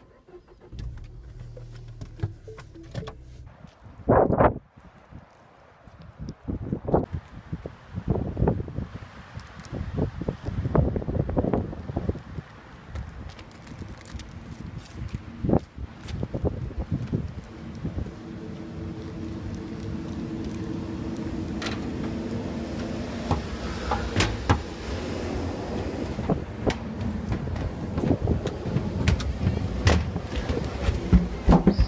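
A small car's engine runs briefly and stops, a car door shuts about four seconds in, then footsteps walk on hard paving for the rest of the stretch, with a steady hum joining about halfway through.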